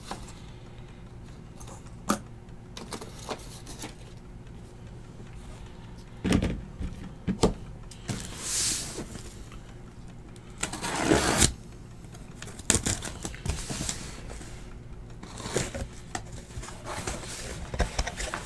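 Handling noise as a sealed case of card boxes is opened: scattered knocks and clicks, with a few longer scraping, rustling bursts about 6, 8 and 11 seconds in, over a low steady hum.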